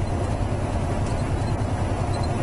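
Semi-truck cruising along a road, heard from inside the cab: a steady low drone of engine and road noise.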